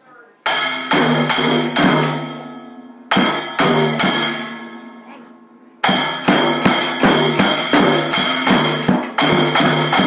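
A child plays a Schoenhut junior drum kit. A loud hit about half a second in rings out and fades, and a second hit around three seconds does the same. From about six seconds there is a steady run of drum hits, roughly three a second.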